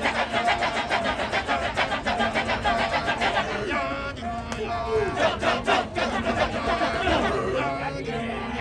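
A Balinese Kecak male chorus chants the rapid, interlocking "cak-cak-cak" from many voices at once. About four seconds in, the chant thins and sliding sung voices come through, then the fast chanting picks up again.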